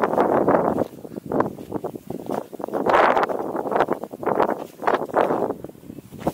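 Footsteps scuffing and crunching on a dry, stony dirt trail while walking downhill, an uneven run of steps about two a second.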